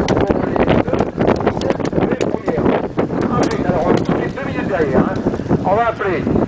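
Indistinct voices talking, with some wind on the microphone.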